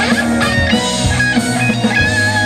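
Live rock band playing an instrumental passage: electric guitar lines over bass guitar and drums.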